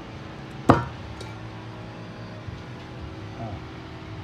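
A single sharp metallic clink about a second in, steel final-drive parts knocking together as the pinion assembly is handled and taken apart, with a couple of faint ticks later over a steady low hum.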